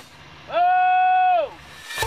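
A woman imitating a cow's moo: one long held call of about a second that swoops up at the start and falls away at the end.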